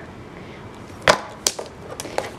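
A ring binder handled on a tabletop: two sharp knocks about a third of a second apart, a little past halfway.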